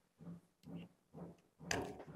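Faint scraping strokes of a small hand tool prying at the edge of a cured fiberglass panel to free it from its mold, about two strokes a second.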